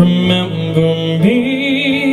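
Electronic keyboard music: sustained chords, changing twice, then a note held with a slight vibrato over them.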